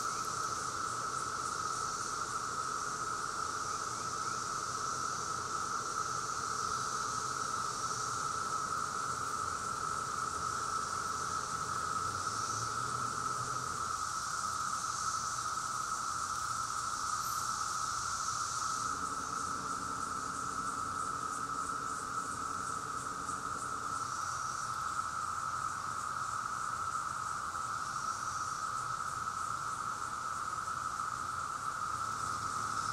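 Chorus of Brood X periodical cicadas: a steady, unbroken high-pitched drone from many insects calling at once, with a fainter, wavering higher buzz above it.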